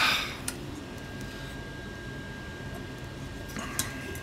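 Small clicks and scrapes of the plastic and metal parts of an HP 48SX calculator being handled as it is pulled apart. There is a sharp click about half a second in and a few more near the end, over a steady low background hum with a faint high whine.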